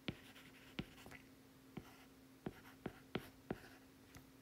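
Stylus tip tapping and sliding on a tablet's glass screen while handwriting: a string of light, sharp taps, about eight across the stretch, spaced unevenly.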